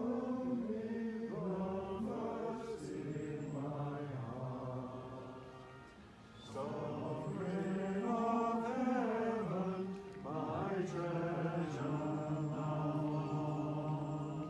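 A small group of people singing a hymn slowly in long, held phrases, pausing between lines about six seconds in and again briefly near ten seconds.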